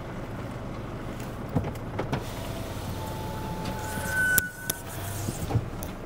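Cabin of a 4x4 Sprinter van rolling slowly: steady engine and road rumble, with a short electric whine about three to four and a half seconds in as a power window goes down.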